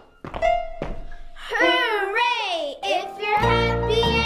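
A few claps and foot stomps on a hard floor, then children shouting a long, gliding "hooray!" in the song's "do all three" break. A children's music backing comes back in near the end.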